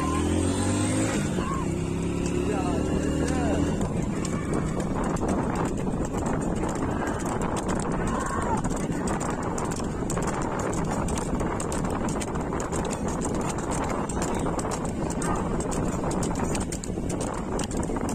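Hooves of a pair of race bulls clattering on a paved road as they pull a flat wooden cart, with the cart's wheels rolling along. A motor hums steadily under it for the first few seconds, then drops away.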